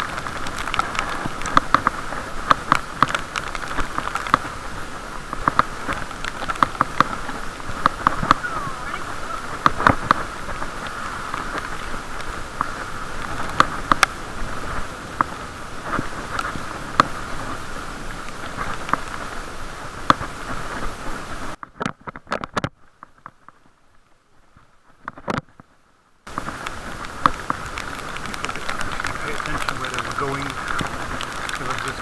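Muffled road and rain noise heard through a camera's waterproof case on a moving bicycle: a steady hiss scattered with many sharp ticks and taps. About three-quarters of the way through, the sound drops almost to silence for about four seconds, then comes back.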